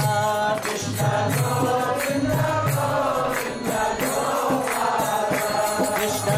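Devotional kirtan: voices singing a mantra to a flowing melody, with hand cymbals striking a steady beat about twice a second.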